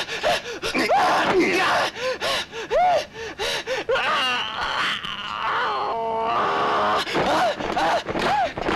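Kung fu film fight sound: a rapid run of punch and block impact effects mixed with the fighters' short grunts and shouts of effort. About six seconds in comes a held cry of strain or pain.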